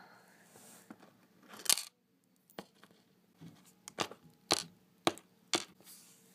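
Small plastic toy figurine handled and tapped on a hard shelf: a series of short, sharp clicks and knocks at uneven intervals, louder ones a little under two seconds in and again about halfway through.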